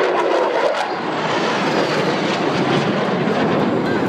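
A Thunderbirds F-16 Fighting Falcon's jet engine, a loud steady roar as the jet flies a demonstration pass overhead.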